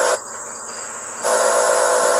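Steady background hiss with a faint hum. It dips quieter for about a second and then returns.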